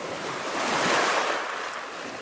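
A single ocean wave washing in, swelling to a peak about a second in and then slowly ebbing away.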